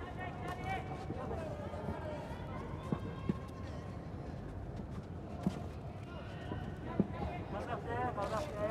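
Boxing arena crowd noise with shouting voices, with a few short sharp thuds spread through the middle as the boxers exchange.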